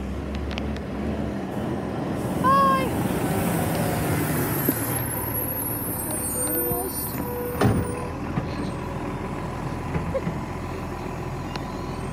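Side-loading garbage truck's diesel engine running as it pulls up, with a hiss from the air brakes about two and a half seconds in and a single sharp clunk near the end.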